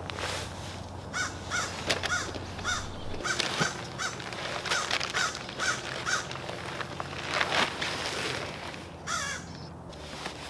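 A bird calling outdoors: a run of about a dozen short, evenly spaced calls, a little over two a second, through the first half or so.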